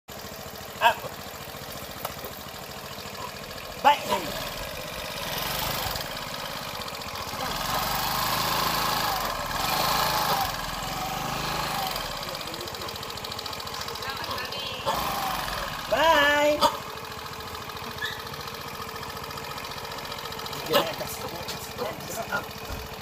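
A small motor scooter engine idling, then running louder for a few seconds about a third of the way in as the scooter pulls away, before settling back to a steady idle.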